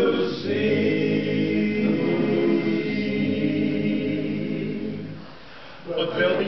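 Men's barbershop chorus singing a cappella in close harmony, holding one long steady chord that fades away shortly before the end.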